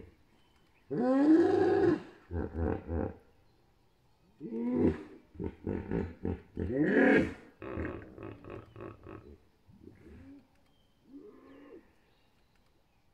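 Hippos calling: a drawn-out call about a second in, then bouts of short, rhythmic grunts, about three a second, that grow fainter toward the end.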